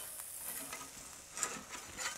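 Faint sizzle from the hot kamado grill, with light scraping and a soft click about one and a half seconds in as metal spatulas work under the smoked turkey on the grate.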